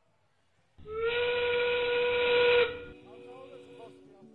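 FRC field's endgame warning, a steam-whistle sound marking 30 seconds left in the match. It is one loud blast of about two seconds, starting about a second in with a short upward slide in pitch, holding steady, then stopping.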